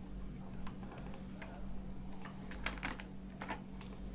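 Computer keyboard keys clicking: a scattering of irregular single keystrokes, over a faint steady hum.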